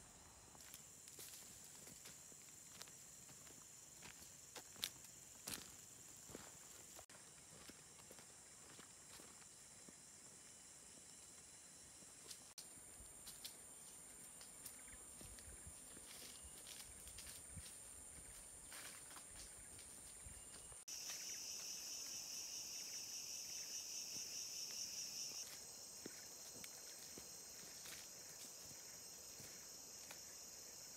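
Faint, steady high-pitched drone of forest insects, changing abruptly several times and loudest about two-thirds of the way through, with scattered soft footsteps on a dirt trail and leaf litter.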